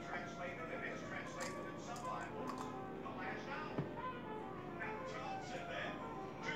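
Faint speech and music from a television playing in the background, with one light click about four seconds in.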